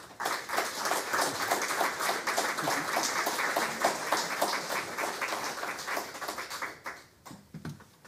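Audience applauding. It starts abruptly, holds for about seven seconds, then dies away into a few last claps.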